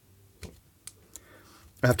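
Three faint clicks of a small screwdriver working a screw in the plastic case of a plug-top power supply module.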